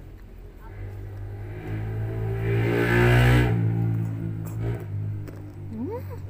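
A motor vehicle passing close by: its engine hum and road noise swell over about two seconds, peak near the middle, and fade away.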